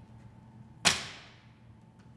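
A single loud, sharp strike or crack about a second in, with a ringing tail that fades over about half a second.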